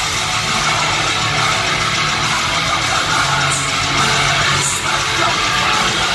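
Heavy metal band playing live at full volume: distorted electric guitars, bass and fast drums in a dense, unbroken wall of sound, recorded from inside the crowd.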